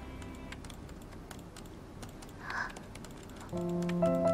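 Quiet, irregular clicking of typing on a computer keyboard. Soft music with sustained notes comes in near the end.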